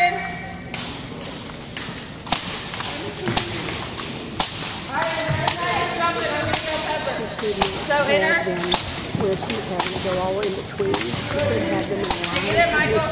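A long jump rope slapping the wooden gym floor over and over as it is turned, in sharp, irregular smacks.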